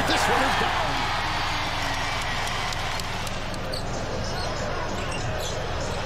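Steady arena crowd noise from a basketball broadcast, with a basketball bouncing on the hardwood court.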